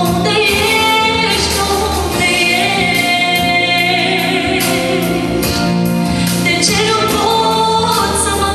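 A woman singing a Romanian Christian song into a handheld microphone, amplified, with long held notes over an instrumental accompaniment of sustained low notes.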